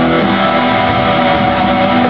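Electric and acoustic guitars playing a slow rock ballad together, an instrumental stretch of held, ringing chords with no singing.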